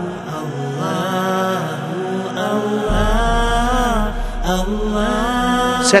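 Background vocal music: a voice chanting long, held, gently wavering melodic phrases, with a low steady drone coming in about halfway through.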